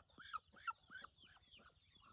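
Faint, short calls from a domestic fowl, about three a second, weakening after the first second.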